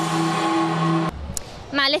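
Live band music with electric guitar and a held note, cut off abruptly about a second in. It gives way to outdoor crowd background noise, and a woman begins speaking near the end.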